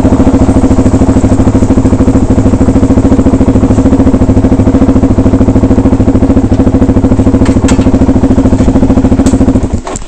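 Suzuki dirt bike's engine running at low speed with a steady, even pulse as the bike rolls up and stops. There are two brief clicks late on, and the engine cuts out suddenly just before the end.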